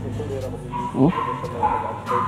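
A dog whining: a thin, high, steady note lasting about a second, starting just before the middle, with a man's brief "oh" about a second in.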